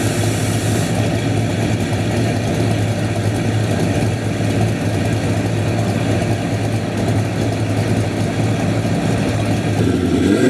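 Car engine idling steadily with a strong low hum.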